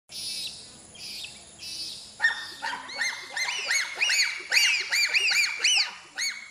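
A group of bonobos calling: three short raspy calls, then from about two seconds in a fast, overlapping chorus of high-pitched calls, each rising and falling in pitch, growing louder toward the end.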